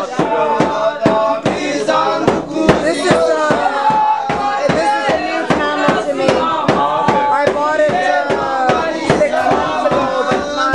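Several men singing and chanting together loudly, over a steady quick beat, about three to four strokes a second, on a hand-held frame drum struck with a beater.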